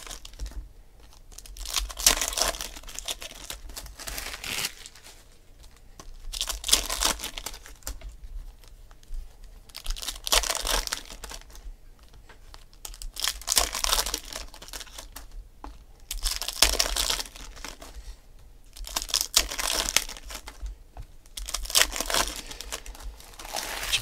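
Foil wrappers of Panini Select football card packs crinkling and tearing as the packs are ripped open, in bursts about every three seconds.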